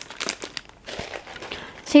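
Crinkling and rustling of candy packaging as small Smarties packs are picked up and moved by hand, with a light knock about halfway through.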